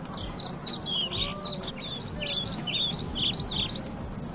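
Birds chirping, a quick, overlapping run of short high chirps, over a steady low outdoor rumble.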